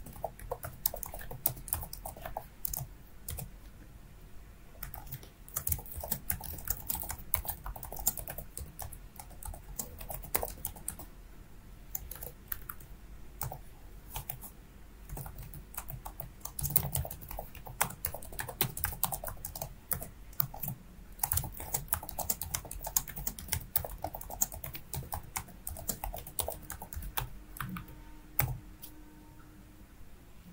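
Computer keyboard typing: runs of fast, irregular keystrokes with a few short pauses between them.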